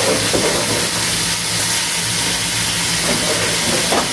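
Beef steaks frying in a pan on the stove, a steady sizzle with a faint low hum underneath.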